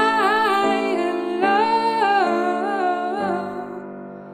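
A woman singing long held notes with vibrato over chords on a Yamaha grand piano. The voice drops away about three seconds in, and the piano fades.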